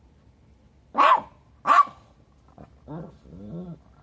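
A Lhasa Apso barking twice, two short, sharp barks about a second in, the second following the first by under a second.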